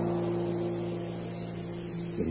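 An acoustic guitar chord ringing out and slowly fading after a strum.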